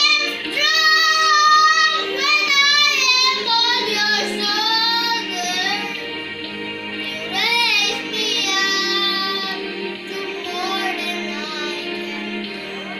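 A young boy singing a melody solo, with steady musical accompaniment underneath.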